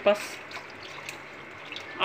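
Milk pouring steadily from a one-litre carton into a steel pan, a faint even trickle of liquid.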